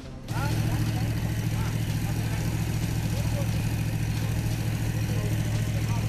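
An engine running steadily at a low, even pitch, starting a moment in, with faint voices in the background.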